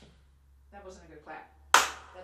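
A single sharp hand clap near the end, after some quiet talk. It is a clap in front of the camera, used to mark a take.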